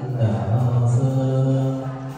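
Buddhist chanting: a low male voice holding long, steady notes, dipping briefly in pitch about half a second in.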